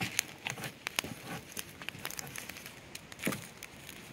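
Wood fire crackling in an open-topped steel drum while a stick stirs and lifts the burning wood, giving irregular sharp pops and clicks. This is the stage of a biochar burn where the unburned pieces are brought up to the top.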